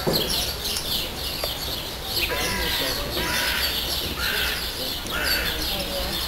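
Small wild birds chirping and twittering continuously, with a few louder, harsher calls in the middle and near the end.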